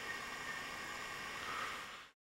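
Faint steady room noise and recording hiss, with no distinct sound event.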